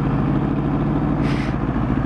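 Motorcycle engine running at a steady speed as the bike is ridden, with wind and road noise, and a brief hiss a little after a second in.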